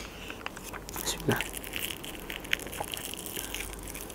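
A person biting and chewing something small close to a lapel microphone: faint crunches and small clicks, with a sharp click at the start and a short soft sound about a second in.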